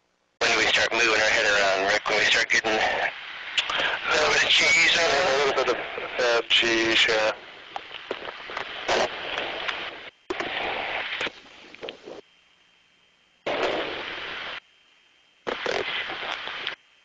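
Voices over a radio or intercom link, switching on and off abruptly in several short stretches, with a faint steady high tone underneath in the second half.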